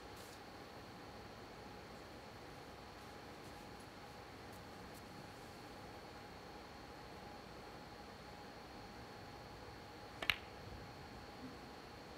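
Hushed snooker arena, then about ten seconds in a single sharp click of the cue tip striking the cue ball, followed by a couple of faint clicks as the balls make contact.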